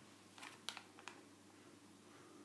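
Near silence: faint room tone with a low steady hum, broken by a few small, quiet clicks between about half a second and a second in.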